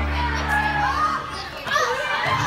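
A crowd of children calling out and chattering over recorded dance music; the music's low held notes break off a little over a second in, leaving the voices.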